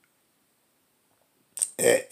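Near silence for about a second and a half, then a short noise and a man's voice as he begins speaking again near the end.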